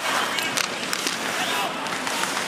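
Ice hockey arena sound during play: a steady crowd hum with skates on the ice and a few sharp clacks of stick and puck early on.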